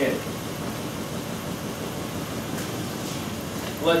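Lexus RX300's 3.0-litre V6 idling steadily, just after its unplugged ignition coil was reconnected, ending a deliberately induced ignition misfire.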